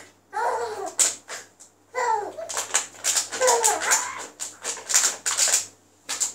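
Baby's high-pitched vocalizing: a few gliding squealy coos, then a run of quick breathy laughs, about four a second, in the second half.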